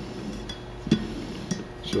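Light metallic clinks and clicks, a handful at irregular intervals, from the steel clutch drums and planetary gears of a Toyota U660E automatic transaxle being turned slowly by hand.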